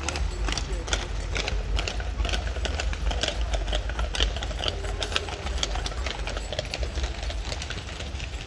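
Draft horses' hooves clip-clopping on pavement as a harnessed hitch walks past pulling a wagon: a quick, irregular run of sharp clops, over a steady low rumble.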